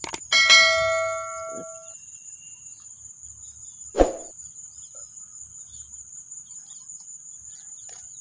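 Subscribe-button sound effect: a quick click, then a bell-like chime about half a second in that fades over about a second and a half. A steady high insect drone runs underneath, with a single sharp knock about four seconds in.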